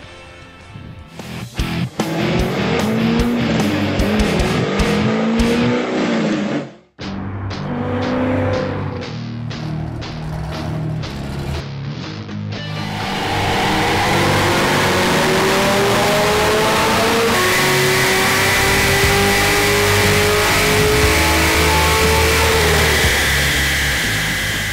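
Background music, then from about halfway a modified Corvette C6 Z06's 427 cubic inch LS7 V8, with aftermarket exhaust and Comp cams camshaft, making a full-throttle baseline pull on a chassis dyno, its pitch rising steadily for about ten seconds.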